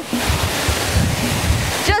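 Steady rushing water of a waterfall of about a 50-foot drop, heard close by, with irregular low buffeting of wind on the microphone.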